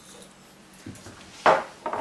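Kitchen things handled on a countertop: a few light knocks, the loudest a sharp clack about one and a half seconds in.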